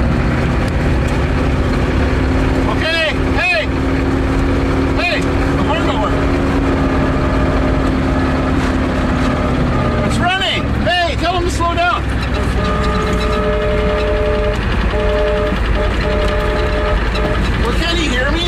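Engine noise during a tow-start of a Ford truck with water in its fuel: a loud, continuous low drone of vehicle engines under way, with a steady hum that stops about ten seconds in. Short shouts come through it, and near the end a steady two-note tone sounds in a few short blasts.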